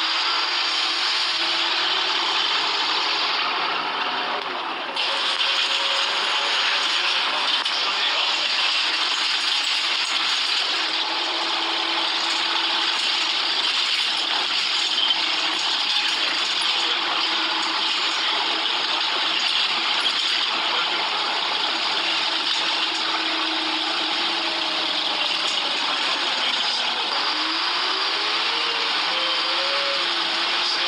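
Inside a Volvo single-deck bus with a Wright body on the move: steady engine and road noise with rattling from the saloon, growing a little louder about five seconds in. Near the end the engine note rises as the bus pulls away or accelerates.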